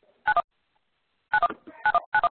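Telephone touch-tone (DTMF) keypad beeps in quick pairs, each a short higher dual tone followed by a lower one, three pairs sounding about half a second to a second apart.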